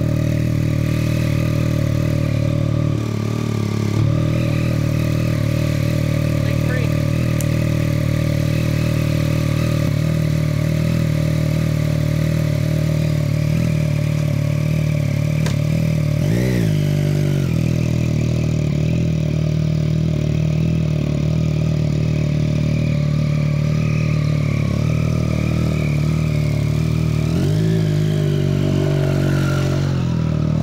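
Yamaha FZ-09's 847 cc inline three-cylinder engine idling through a newly fitted Black Widow aftermarket full exhaust, blipped briefly about halfway through and again near the end.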